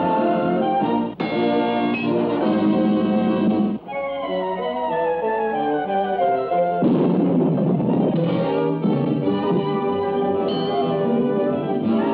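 Cartoon background score music with no dialogue, broken by two short pauses, with a run of falling notes in the middle and a rush of noise for about a second and a half after it.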